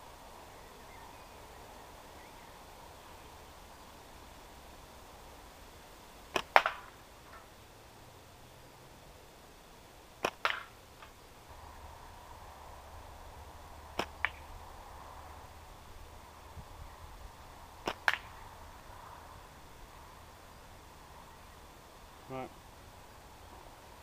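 Slingshot shots, four of them about four seconds apart: each a sharp snap as the bands are released, followed a fraction of a second later by a second crack as the ball hits the target.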